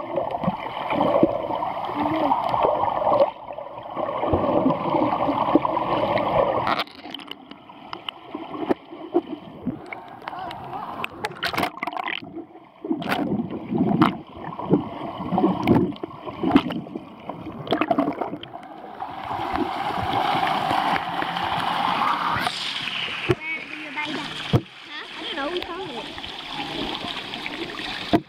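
Swimming-pool water picked up by a GoPro underwater: sloshing, bubbling and splashing with children's voices, busier in the first several seconds, quieter in the middle with scattered knocks, and busier again near the end.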